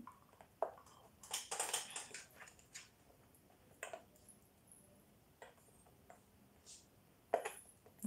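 Faint, scattered light clicks and rustles of a small white plastic device and its packaging being handled, with a short burst of rustling about a second and a half in and a few more clicks near the end.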